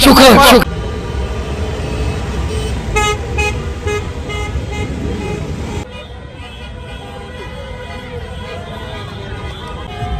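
Car horns honking in the street, with a cluster of short toots about three to four seconds in, over traffic and crowd noise. A man's voice is heard briefly at the start.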